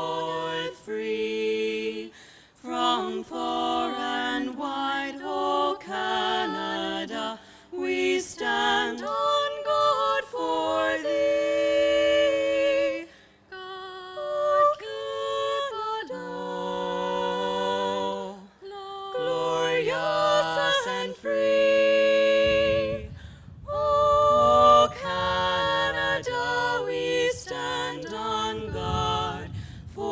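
A national anthem sung a cappella: an unaccompanied voice in a slow melody with long held notes and short breaths between phrases. A low rumble joins in near the end.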